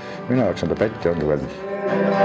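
A man's voice, then acoustic guitar notes starting to ring near the end.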